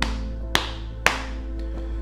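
A clip-on microphone tapped three times with a finger, giving sharp thumps about half a second apart, over soft background music.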